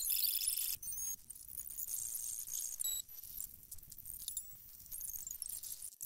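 A musical theatre cast recording, singing and orchestra, sped up to an extreme rate so that it blurs into a high-pitched jangling chatter, with brief dips near the middle and at the end.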